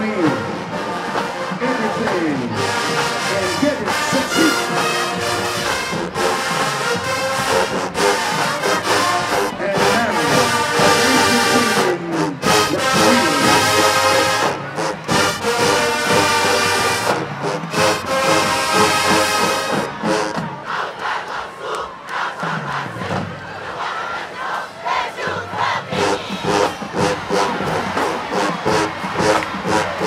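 A large marching band's brass section and drums playing loudly, with a stadium crowd cheering over it. About twenty seconds in, the brass thins out and the drums carry on with the crowd.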